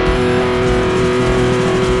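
Heavily distorted electric guitar holding one long note over a dense, chugging low part, in a metal riff.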